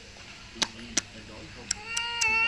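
A baby fussing, with short faint whimpers and a few sharp clicks, then breaking into a loud wavering cry near the end.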